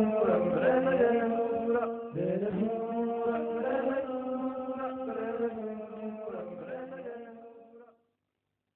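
Closing theme song: a voice singing long held notes that slide between pitches, with music, fading out near the end.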